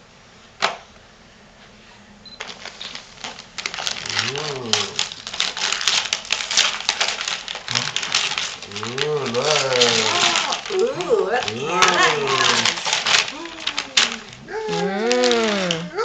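Gift wrapping paper crinkling and tearing as a present is unwrapped by hand. A voice makes drawn-out, wordless rising-and-falling sounds several times over it, and there is a single sharp click about half a second in.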